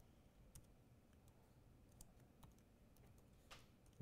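A few faint, sparse computer-keyboard keystrokes, single key clicks spaced about half a second to a second apart, over near-silent room tone.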